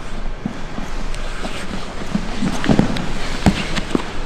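Two grapplers' bodies and bare feet shifting and bumping on foam gym mats: scuffing with scattered soft thuds, the sharpest about three and a half seconds in.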